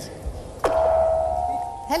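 A steady electronic tone on the telephone line, held for about a second and a quarter, as the call to a jury spokesperson connects.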